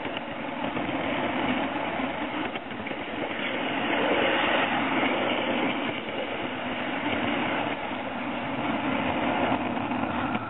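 Small live-steam garden-railway train running along its track, heard from a car in the train: a steady rolling rush of wheels on rail behind the Aster Frank S steam locomotive, with faint clicks, getting somewhat louder about four seconds in.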